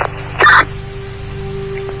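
A steady hum with a low rumble, as inside the cab of a vehicle idling in stop-and-go traffic. About half a second in, a short, loud burst of noise breaks through, the loudest sound here.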